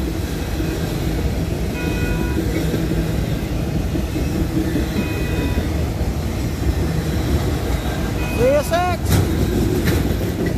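Autorack freight cars rolling past on the rails with a steady rumble. A brief high ringing tone comes back every few seconds.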